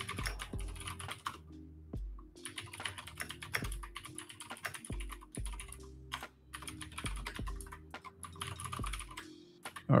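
Computer keyboard typing: bursts of quick keystrokes separated by short pauses.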